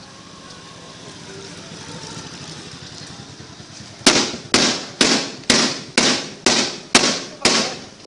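A motorcycle's engine noise grows as it approaches, then about halfway in a rapid, regular series of sharp, gunshot-like bangs begins, about two a second, each ringing out briefly, and keeps going.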